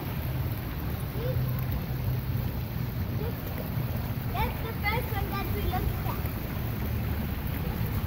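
Steady low rumble of wind buffeting the microphone, with a few brief voice sounds about halfway through.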